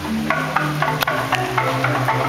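Balinese gamelan ensemble playing: bronze metallophones struck in a quick run of ringing notes, about four a second, over sustained low tones.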